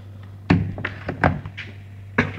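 Several sharp knocks and clatters of small hard objects being handled and set down, the first the loudest, over a steady low electrical hum.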